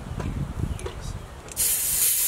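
Low rubbing and handling noise, then about one and a half seconds in a loud burst of compressed-air hiss as an air chuck is pressed onto a car tyre's valve stem to inflate it.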